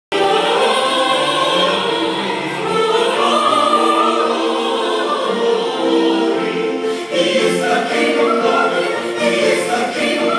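Chamber choir singing in harmony with orchestral accompaniment, holding long chords in a classical choral piece, heard from out in the audience.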